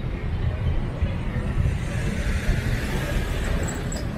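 Street traffic at a busy junction: a steady low rumble of idling motorbikes and cars, with a hissing swell of a passing vehicle building through the second half.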